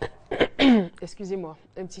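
A woman clearing her throat: a sharp cough-like burst, then a falling voiced rasp and a few smaller throat sounds, from a frog in the throat, before she starts speaking near the end.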